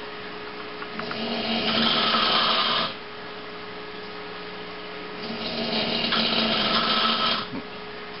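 A man snoring loudly: two long snores of about two seconds each, roughly four seconds apart, over a steady low hum.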